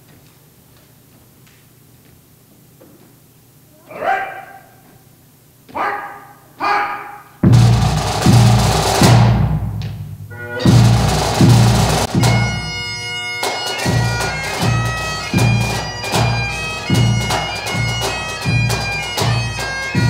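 Highland bagpipes with snare and bass drums of a pipe and drum band. After a quiet start, three short rising notes sound as the pipes come in, about four to seven seconds in. From about seven seconds the tune plays with drones and drumming, settling into a steady beat.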